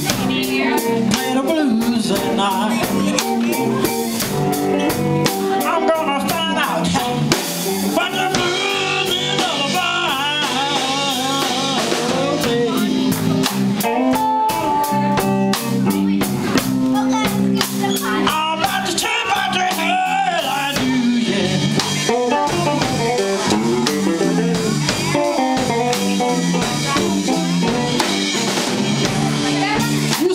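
Live electric blues band playing: electric guitar with bent, wavering notes over bass guitar and drums.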